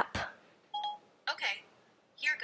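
A short electronic beep from Siri on the phone about a second in, with a brief snatch of speech after it.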